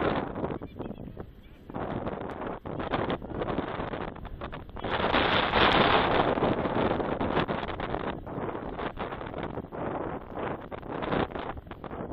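Wind buffeting the microphone in uneven gusts, strongest from about five to eight seconds in.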